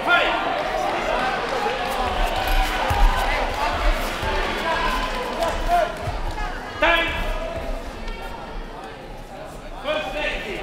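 Kickboxing sparring in a large echoing hall: dull thuds of kicks and punches on padded gear and feet on the mat, scattered through the middle. Loud shouts from coaches and officials come at the start, around seven seconds in and at the end.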